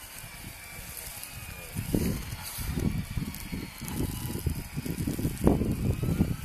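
Lely Vector automatic feeding robot driving slowly over a snow-covered track. From about two seconds in, a louder, irregular low rumbling and crunching sets in.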